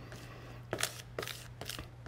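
A plastic scraper pushing and scraping damp, paint-soaked coconut-fiber absorbent over a stainless steel countertop, in a few short strokes in the second half.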